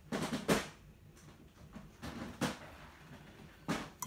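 A few soft knocks and rustles of small objects being handled on a desk: a cluster in the first half second, then single ones about two and a half seconds in and near the end.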